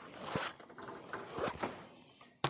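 Refrigerator being opened and the plastic-wrapped playdough put inside: a few short rattling and rustling handling sounds at the door and shelves.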